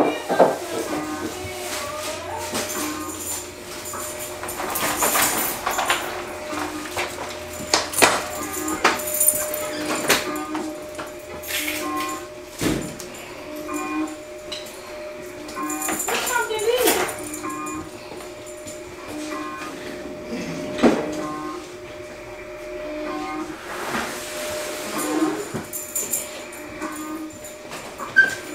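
A fake emergency-broadcast alert playing from a TV: a steady droning tone under a voice reading the alert. A few sharp knocks come in along the way.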